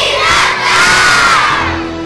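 A large crowd of children shouting together in one loud burst of cheering, which fades near the end as music comes in.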